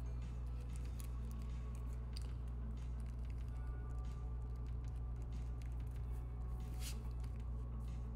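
Steady low electrical hum, with scattered light scratches and ticks of a metal mechanical pencil on paper; the sharpest scratch comes about seven seconds in.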